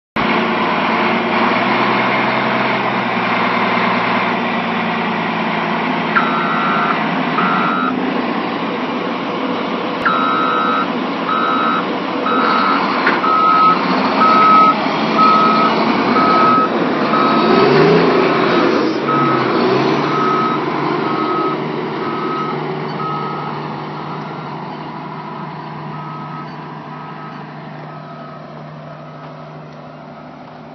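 Caterpillar 143H motor grader's diesel engine running loud and close. Its reverse alarm gives short regular beeps, starting about six seconds in and running on, slowly fading, until near the end. The engine note rises and falls around the middle, and the whole sound fades over the last several seconds as the machine moves away.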